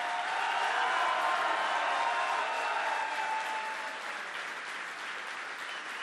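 A large indoor crowd applauding, the clapping dying down over the last couple of seconds.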